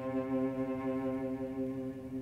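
Cello playing one long held low note on a slow bow stroke, played with the bow hair barely touching the string for an airy, light sound. The note slowly fades toward the end.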